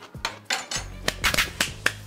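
A person clapping hands, several sharp claps in an uneven run, in delight at a taste.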